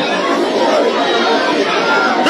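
Many voices talking over one another at a steady level: crowd chatter.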